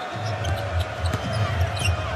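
A basketball being dribbled on a hardwood court, a run of repeated low thumps, with arena crowd noise behind.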